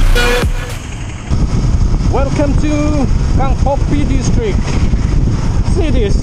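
Electronic music ends about a second in. Then the rumble of a moving Yamaha R15 V3 motorcycle and wind noise run on, with a person's voice calling out in several long, wordless rising-and-falling tones over it.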